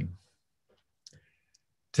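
A man's voice trails off at the end of a word, then near silence, broken about a second in by a couple of faint, short clicks.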